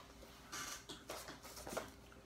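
Faint rustling of a cardboard LP record jacket being handled and turned over, a brief scrape about half a second in followed by a few light taps.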